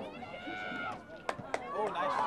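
High-pitched voices of players and spectators calling out across a field hockey pitch. Two sharp clacks come just past the middle, about a quarter second apart, from field hockey sticks striking the ball.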